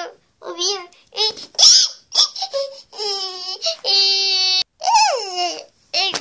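High-pitched wordless baby-like babbling and crying calls, gliding up and down, with two longer held notes in the middle, the second cutting off sharply.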